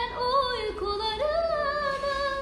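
A woman singing a long, wordless ornamented vocal line. Her held notes bend and wobble, slide down to a low dip about halfway, then rise again.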